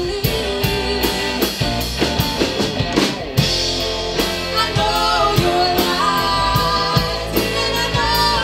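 Live rock band playing: electric guitars, bass guitar and a drum kit keeping a steady beat, with a woman singing over it from about halfway through. Just past three seconds the band briefly drops out, then comes back in on a hard hit.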